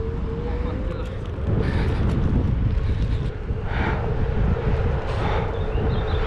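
The whine of a small electric motor rising in pitch as the ride picks up speed, then holding steady at cruising speed, under wind rush on the microphone and road rumble.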